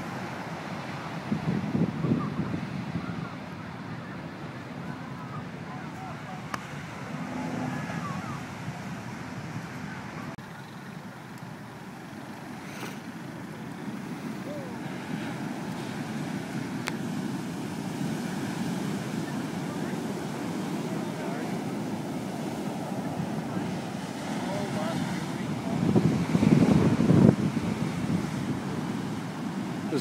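Heavy ocean surf breaking and washing up a sand beach: a steady rushing, with louder surges about two seconds in and again near the end.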